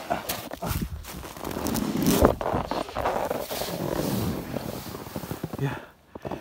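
Snowboard sliding down a snowy slope: a rough scraping hiss of the board over the snow, mixed with scattered knocks and rustles. It slows and dies away near the end as the board loses momentum and stops.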